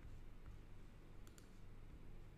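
Near-silent room tone with two faint clicks in quick succession a little past halfway through.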